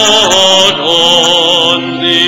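Sacred vocal music in a church: a voice singing held notes with wide vibrato, in phrases broken by short breaths.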